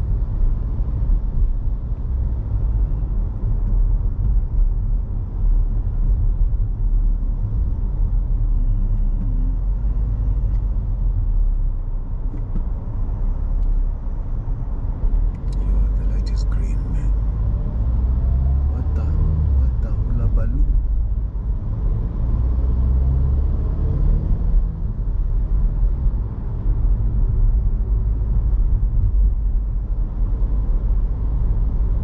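Steady low rumble of a car driving along a city street, engine and tyre noise heard from inside the cabin, with a few faint ticks a little past halfway.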